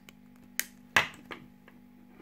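A metal-bodied Lamy Studio rollerball being set down on a desk: two sharp clicks about half a second apart, then a fainter tick.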